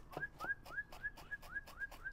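A knife chopping cilantro on a cutting board in quick strokes, about four a second. Each chop is matched by a short rising whistle made as a playful sound effect.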